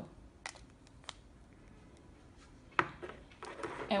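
Small clicks and taps from handling a twist-up aluminium perfume atomizer and its glass inner bottle: a few light clicks, then one sharper tap nearly three seconds in as it is set on the table, with a few faint clicks after.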